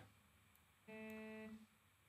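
A single sung syllable, "damn", from a Flex Pitch-corrected lead vocal, heard on its own about a second in. It is held for under a second at one dead-flat pitch, with the rest near silence.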